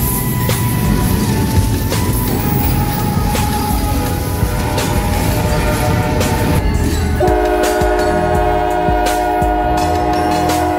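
Freight train rolling past, a low rumble with rail clicks. About seven seconds in, a diesel locomotive's horn starts and holds one long steady chord of several notes.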